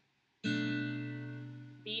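Acoustic guitar playing a single B minor 7 chord, its strings plucked together with thumb and fingers, ringing out and slowly fading. It starts about half a second in, after a moment of dead silence.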